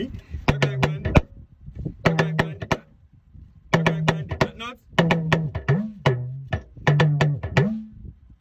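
Hourglass talking drum struck with a curved stick in five short phrases of quick strokes, its pitch held and then bent up and down between strokes as the player squeezes the tension cords, playing back the rhythm just taught.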